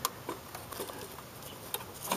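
Light clicks and handling noises from hands working a throttle body loose on its hoses, with a sharp click right at the start and a few faint ticks after.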